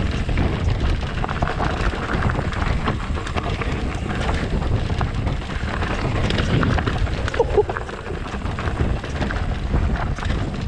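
Wind rushing over the camera microphone as an Ibis Ripley 29er mountain bike rolls down a loose, rocky trail, its tyres crunching over stones and the bike rattling with many small knocks. A brief squeak about seven and a half seconds in.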